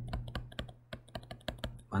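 Stylus tip tapping and clicking on a tablet screen while Korean handwriting is written, in quick irregular taps several times a second, over a faint steady low hum.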